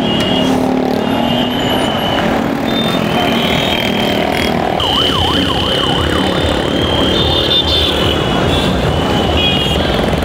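Motorcycles running past in a steady stream, their engines making a dense rumble. Over it, repeated shrill high tones sound, some held for a second or more, with a few quick up-and-down warbling tones about halfway through.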